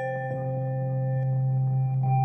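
Music: sustained ringing, bell-like tones held over a steady low drone, the quiet opening of a heavy psych rock album.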